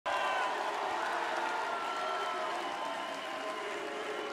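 Large arena crowd cheering and applauding steadily.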